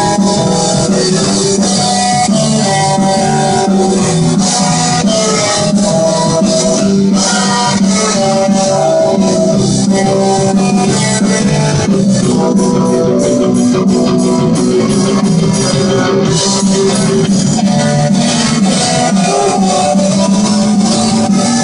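Punk rock band playing live and loud: distorted electric guitars, bass guitar and drum kit in an instrumental passage with no vocals, with a stretch of quick, even cymbal-like strokes in the middle.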